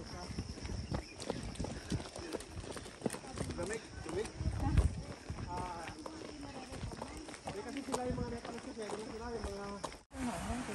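Footsteps of several hikers walking on a concrete road, a steady run of short scuffs and taps, with faint voices talking in the second half. A thin steady high whine sits in the background.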